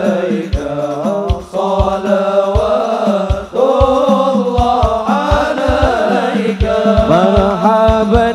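A group of men's voices singing an Arabic sholawat in unison, with long held notes that glide between pitches. Deep drum strokes keep an uneven, syncopated beat of about two to three a second underneath.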